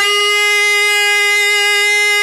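One long musical note held steady in pitch, rich in overtones.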